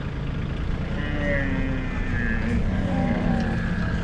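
A tractor engine runs steadily. Over it, from about a second in, a camel gives one long, low, drawn-out call that fades out near the end.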